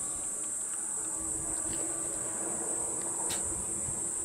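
A steady high-pitched insect chorus keeps buzzing without a break.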